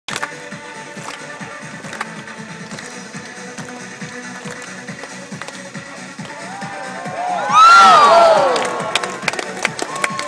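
Background music with a steady beat plays throughout. About seven and a half seconds in, an audience breaks into loud whooping cheers for about a second, then fades back under the music.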